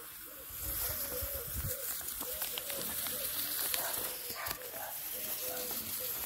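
Outdoor ambience with a run of short, repeated animal calls over a steady high hiss, and soft knocks and rustles in the first couple of seconds as plastic drip tape is stretched out over the soil.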